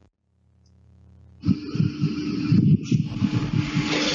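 Near silence for about a second and a half, then the background noise of a noisy room starts abruptly: a steady hum over busy, irregular rumbling and hiss.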